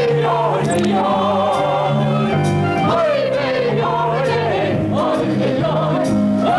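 A song from a stage play: voices singing with vibrato over an instrumental accompaniment whose bass notes change in regular steps.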